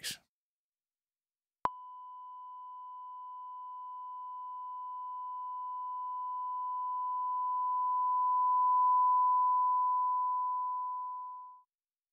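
A 1 kHz sine test tone with a linear fade, run through an Elysia mpressor compressor set to a negative ratio of −2:1. It starts with a click and rises steadily in level for about seven seconds, then fades out shortly before the end. The negative compression turns the loud, above-threshold start of the fading tone down harder than its quieter part, so it swells instead of fading, then follows the fade once it drops below the threshold.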